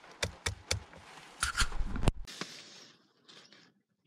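A quick series of plastic clicks and knocks as the headlight switch on the Citroën C3's indicator stalk is handled and turned, the loudest click coming about two seconds in.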